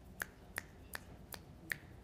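A man snapping his fingers in a steady beat, five snaps about two and a half a second apart.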